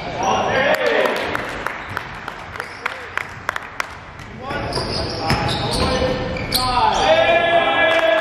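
Basketball bouncing on a hardwood gym floor during play, a string of short, sharp knocks, with players' voices calling out in the large hall, loudest near the end.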